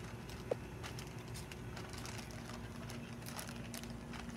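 Faint, scattered crinkling of a plastic zip-lock bag as the cornstarch chalk-paint mix inside is kneaded by hand against a table, over a steady low hum.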